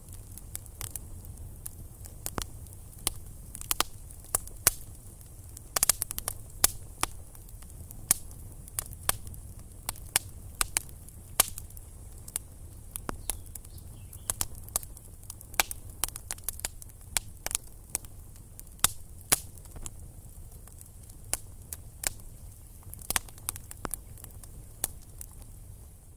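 Wood campfire crackling, with frequent irregular sharp pops over a steady low rumble.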